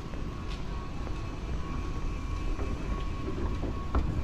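A train running: a steady low rumble with a faint steady whine above it and a few light clicks.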